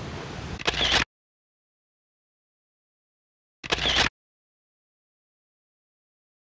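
A camera shutter sound, heard once about a second in and again near four seconds, each a brief burst with dead silence between. Before the first burst there is a short stretch of wind noise.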